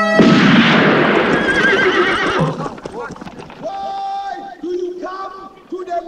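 Horses neighing over a loud rush of noise, which fades after about two and a half seconds. From then on comes a run of short, held calls, one after another.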